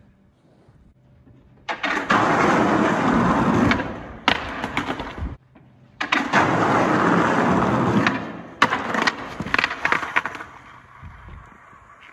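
Skateboard wheels rolling over rough pavement in two runs, one starting about two seconds in and one about six seconds in, each a few seconds long. Sharp clacks and hits of the board follow, and the second run ends in a crash as the skater falls.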